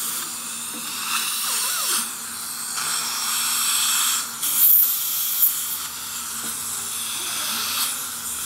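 Dental saliva ejector suction hissing steadily in the mouth, with a couple of short, louder slurps about halfway through.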